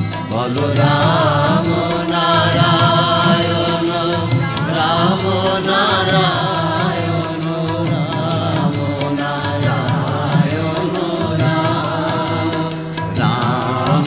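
Bengali devotional nam-sankirtan music: a wavering melodic line over a steady low accompaniment.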